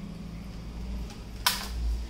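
A low handling rumble, with one brief, sharp rustle or clack about one and a half seconds in.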